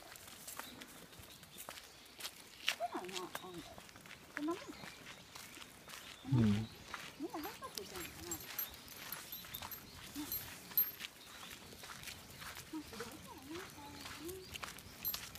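Footsteps on a paved path with scattered irregular clicks, and a few short, low vocal sounds, the loudest about six seconds in and falling in pitch.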